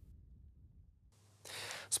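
Near silence for about the first second, then a short audible in-breath from the news anchor just before he starts to speak.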